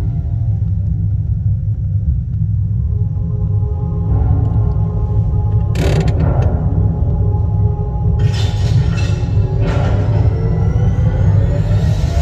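Dark, dramatic sci-fi soundtrack music over a deep, steady rumble, played through the car's radio speakers. A sudden blast hits about six seconds in, a loud rushing noise follows from about eight to ten seconds, and rising sweeps come near the end.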